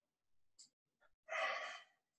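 A man's breathing under effort: a faint short breath early on, then a loud breathy exhale, like a sigh, about a second and a half in. It comes as he presses a resistance band overhead from a seated position.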